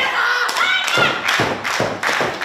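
Dull thuds of wrestlers' bodies and feet on the wrestling ring's canvas mat, several in quick succession, mixed with high-pitched shouts and some clapping.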